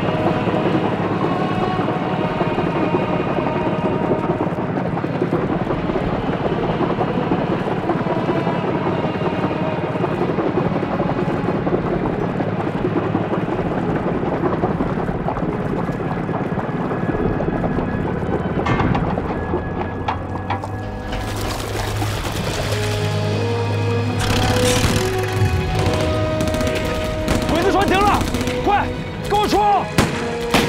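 Drama soundtrack: a music score with held tones plays through the first two-thirds. From about 19 s in, gunfire and explosions from a battle come in and continue over the music to the end.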